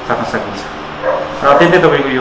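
A man speaking, quieter at first and louder from about one and a half seconds in.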